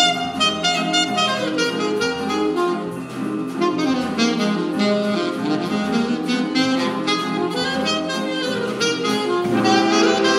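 Live school jazz band playing, a saxophone carrying the lead over the band and rhythm section, with a steady light cymbal tick.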